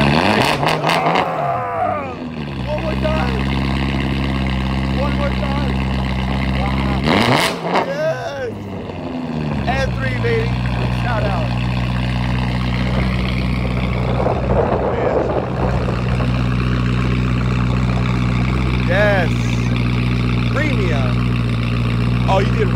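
BMW coupe's engine idling and being revved twice: a quick blip right at the start and a sharper one about seven seconds in, each falling back to a steady idle. Kinda loud.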